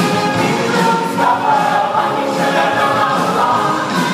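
Mixed choir of men's and women's voices singing together, loud and continuous.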